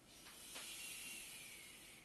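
A man breathing out hard through the mouth in one long hiss, the exhale on the effort of a Pilates exercise; it peaks about half a second in, eases slowly and stops sharply.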